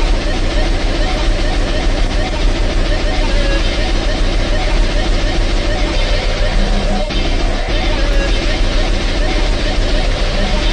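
Harsh, heavily distorted electronic music from a DJ mix: a dense, unbroken wall of noise over a constant heavy bass.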